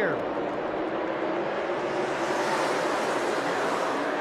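A pack of NASCAR Cup stock cars running flat out together, their pushrod V8 engines blending into one dense wash of engine noise that swells and brightens in the middle as the field passes, then eases near the end.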